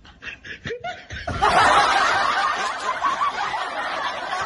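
Loud laughter from several voices at once, starting a little over a second in and continuing unbroken after a few short sounds at the start.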